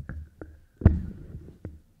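Handheld microphone being handled and set back into its table stand, picked up by the microphone itself: four short knocks and dull thumps, the loudest a little under a second in.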